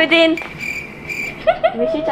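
A cricket chirping with a steady high-pitched trill for about a second, between lines of a group's chanted game rhyme.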